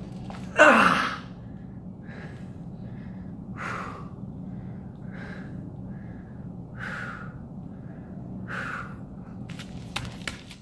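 A man's loud strained groan, falling in pitch, about half a second in, followed by heavy, breathy exhalations roughly every second or so from the exertion of a suspension-strap exercise, over a steady low hum.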